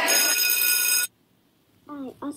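A steady electronic ringing tone with many high overtones, bell- or ringtone-like, played back through laptop speakers; it cuts off suddenly about a second in, followed by a brief silence.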